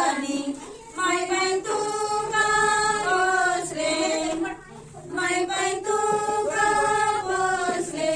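Women singing a song in sustained phrases, with short breaks between lines and no clear instruments.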